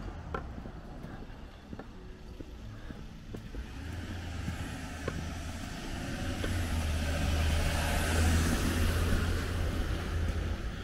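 A car passing along the road, its tyre and engine noise growing steadily louder through the second half and peaking near the end before easing off.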